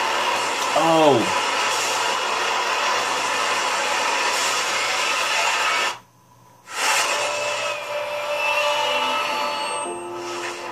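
Movie trailer soundtrack playing: a dense wall of score and sound effects, with a short falling cry about a second in. It cuts out suddenly for well under a second a little past the middle, then comes back in full.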